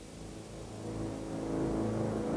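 A low, sustained drone of several steady tones swelling steadily louder: the rising opening of a trailer's soundtrack, heard off VHS tape with a hiss underneath.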